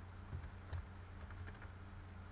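Computer keyboard being typed on, a few faint, scattered keystrokes over a low steady hum.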